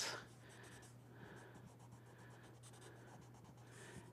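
Faint scratching of a charcoal pencil shading on drawing paper, in short repeated strokes about one every two-thirds of a second, over a low steady hum.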